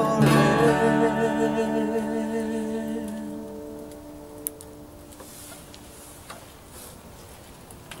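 Acoustic guitars strike the song's final chord, which rings on and fades away over about five seconds. After that only a low, quiet background remains, with one small click.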